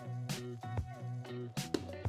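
Background instrumental music: held notes changing pitch now and then, with a few light percussive hits.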